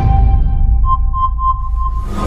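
Film-leader countdown intro sound effect: a deep rumble under a steady held tone, with a quick run of four short, evenly spaced beeps in the second half.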